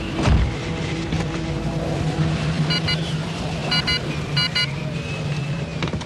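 Animated-series sound design: a steady low wind drone of a snowstorm, with a thud just after the start. About halfway through come three pairs of short electronic beeps.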